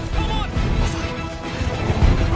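Film soundtrack: music with held tones over a dense low rushing rumble, the wind noise of a skydiving freefall.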